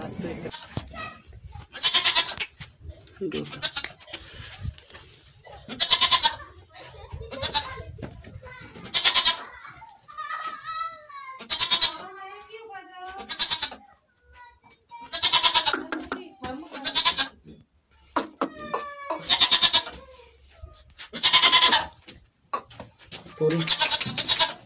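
Barbari goats bleating repeatedly: loud bleats about a second long, one every couple of seconds.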